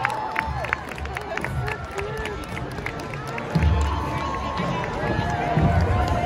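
Parade-side crowd: a mix of nearby voices, calls and cheering, with scattered sharp claps and a low beat about once a second underneath.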